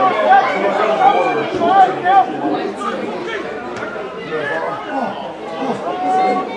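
Spectators' voices talking and calling out over one another, an indistinct chatter of several people.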